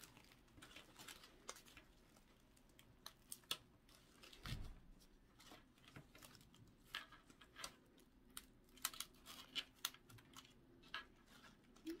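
Faint, scattered crinkles and small clicks of artificial leaves, ribbon and grapevine wreath being handled as a bow is held pressed in place, with one soft thump about four and a half seconds in.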